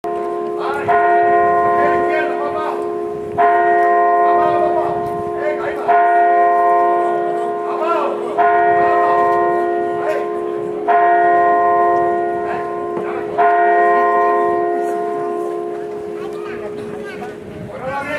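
A church bell tolling slowly: six strikes about two and a half seconds apart, each ringing on and fading before the next, the last dying away near the end.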